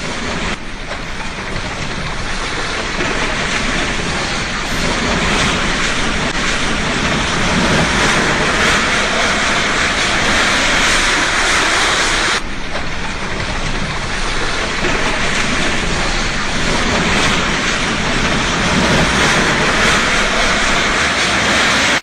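Building collapse: a steady rush of falling masonry and rubble as a house comes down. The sound breaks off abruptly about twelve seconds in and starts again.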